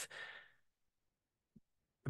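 Near silence in a pause in a man's speech, with a faint breath trailing off in the first half second and a tiny soft blip about a second and a half in.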